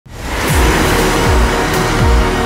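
Soundtrack music fading in, with a deep kick drum beat under a dense wash of sound.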